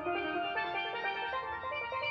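Steel pans playing a melody of quick, ringing notes.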